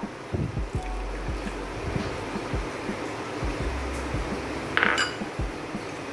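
A metal spoon stirring a thick paste in an enamel pot, with scattered soft knocks and one sharp ringing clink of spoon against pot about five seconds in.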